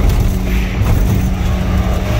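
Loud, steady low rumble of a vehicle's engine and road noise, heard from inside a moving vehicle.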